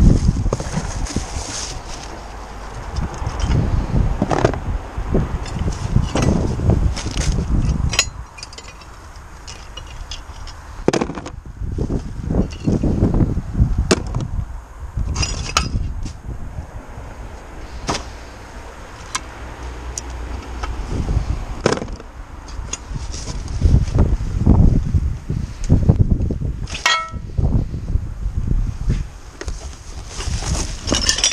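Rummaging in a wheeled waste bin: plastic bags and cardboard boxes rustling and crinkling as they are handled, with scattered sharp clicks and knocks of items being moved.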